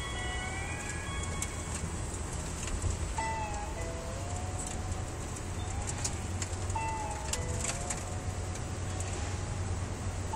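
Steady road and engine rumble inside a moving car's cabin, with a slow, wavering melody in repeating phrases over it.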